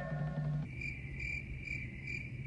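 Crickets chirping in a film soundtrack: an even, high chirp repeating about two to three times a second. It begins about half a second in, as a held musical tone cuts off.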